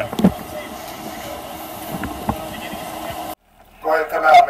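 Steady outdoor noise with a low hum of idling vehicles, picked up on a police body-worn camera, with a brief voice at the start. The sound cuts off suddenly near the end.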